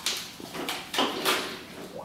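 A few short knocks and handling noises, about four in two seconds, from a plastic-bottle model submarine being handled in a plastic tub of water.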